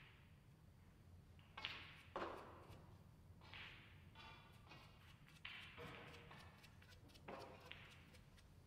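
Near silence: quiet hall room tone with a low steady hum, broken by a few faint, short noises.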